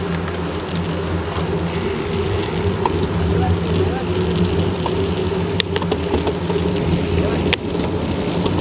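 Steady rumble of a bicycle ride on city asphalt picked up by an action camera riding along: tyre noise and wind on the microphone, with two sharp clicks about five and a half and seven and a half seconds in.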